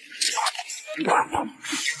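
A man loudly slurping thick hot-and-sour glass noodles (suanlafen) out of a pot of broth in repeated wet sucks, with short voiced hums from his throat mixed in.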